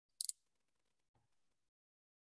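Near silence, broken about a quarter second in by one short, sharp scratchy noise with two or three quick peaks, then a faint low blip about a second in.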